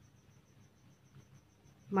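Quiet pause with a faint, high-pitched chirp pulsing rapidly and steadily in the background, and a ballpoint pen writing on paper.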